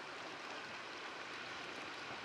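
Shallow river running over a rocky bed, a steady, even rush of water.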